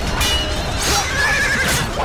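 A horse whinnies in a wavering cry through the second half, over dense battle noise with a few sharp clashes.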